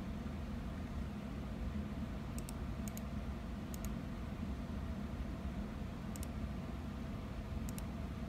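A computer mouse clicked about five times, each click a quick double tick, over a steady low hum.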